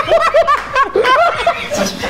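Several men laughing hard together, in quick short overlapping bursts of chuckling and giggling.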